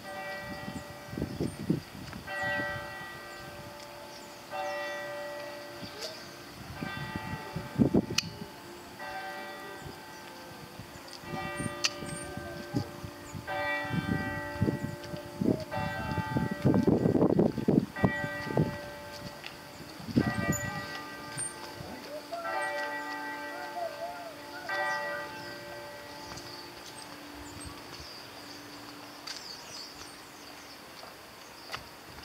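Bells ringing in a long run of strokes, about one a second, several pitches in turn, each note ringing on into the next, stopping about 26 seconds in. Bursts of low rumble come and go alongside, the loudest about 17 seconds in.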